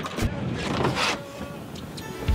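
Wind buffeting the microphone over the wash of the sea on a fishing boat's deck.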